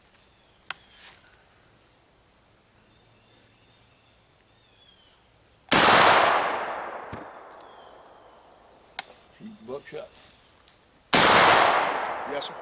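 Two shotgun shots about five and a half seconds apart, fired with loads of two .60-caliber lead round balls. Each is a sharp blast followed by a long echo dying away through the woods.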